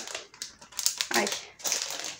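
A woman's short "ai" exclamation about a second in, with faint rustling and light clicks from a small plastic earring packet being handled as an earring back comes loose.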